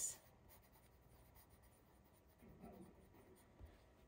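Faint scratching of a pencil writing on a sheet of paper.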